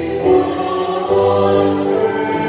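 Church choir of young men and women singing a part of the Mass in unison and harmony, moving between held notes.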